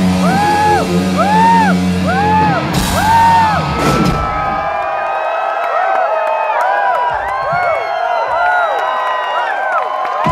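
Live rock band with electric guitar playing a figure of repeated rising-and-falling pitch bends, about one every half second, over bass and drums. About four seconds in the band stops on a crash, and the bending guitar tones carry on alone, overlapping and echoing, with crowd whoops.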